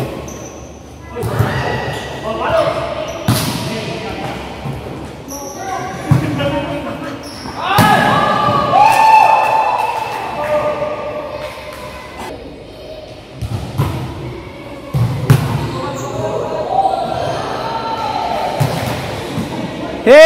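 A volleyball struck by players' hands and forearms again and again during a rally, each hit a sharp smack that echoes in the large sports hall, with players shouting to one another between hits.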